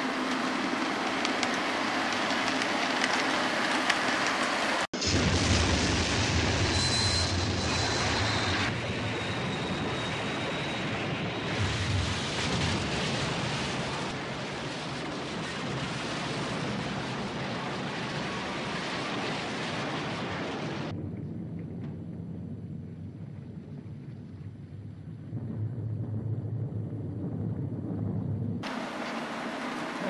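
Film sound of a wooden railway bridge being blown up with a train on it: a long, dense roar of explosion, crashing wreckage and water, changing abruptly at edits about five seconds in and again near the end.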